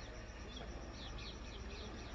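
Faint steady high-pitched insect trill, with a few short falling chirps in the middle.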